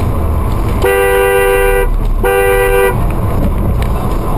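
Car horn honked twice, a blast of about a second then a shorter one, a warning at a car that has just cut in. A steady low rumble of the car runs under it.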